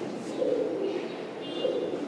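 A felt-tip marker squeaking in short strokes on a whiteboard, with a bird cooing in the background.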